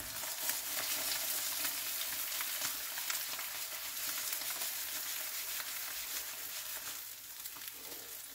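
Eggs frying in oil in a Tefal Unlimited non-stick pan: a steady sizzle with many small crackles, easing slightly near the end.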